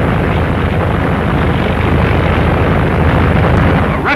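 Twin-engine piston bomber in flight: a steady, loud engine and propeller roar with a low rumble and a fine, even pulsing.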